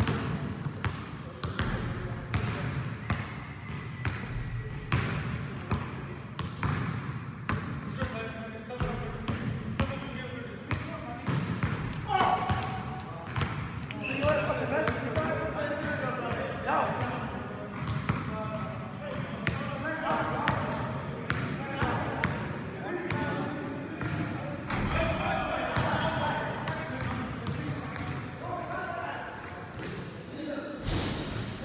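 Basketballs bouncing on an indoor gym floor in irregular thumps, mixed with players' voices calling out across the gym.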